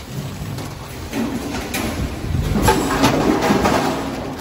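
Vertical form-fill-seal packaging machine running with a steady low hum; from about a second in, a rushing pour of product dropping from the multihead weigher down the forming tube into the bag builds up, loudest near the end, with a few sharp knocks.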